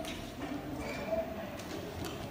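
A child's voice speaking faintly, with a few light knocks on a hollow surface.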